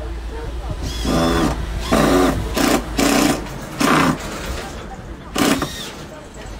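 Cordless drill driving screws up into overhead timber, run in about six short bursts of a second or less, each a steady motor whine.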